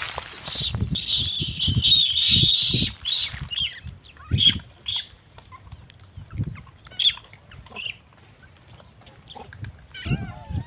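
Rhesus macaques calling from a troop: shrill screeching for the first three seconds, then short squeaks and chirps on and off that thin out toward the end.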